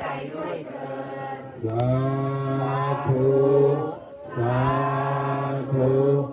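Buddhist chant of "sa-a-thu" (sādhu), the response of assent and rejoicing that closes a blessing, sung by voices in long held syllables. After a short break a second "sa-a..." begins about four and a half seconds in.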